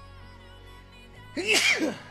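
A man sneezes once, loudly, about one and a half seconds in: an allergy sneeze, over steady background music.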